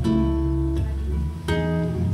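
Acoustic guitar strumming chords in a song's instrumental passage, with a fresh chord struck about one and a half seconds in.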